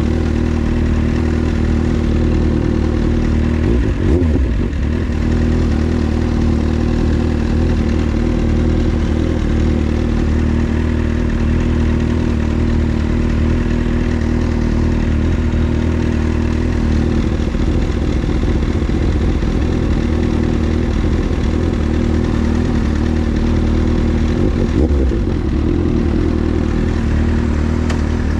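Motorcycle engines idling steadily: a Kawasaki Z750's inline-four breathing through an SC Project aftermarket exhaust, with a second sport bike idling alongside.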